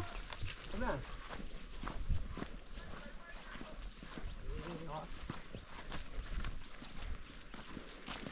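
Irregular footsteps and scuffs on a muddy dirt trail, with faint voices now and then.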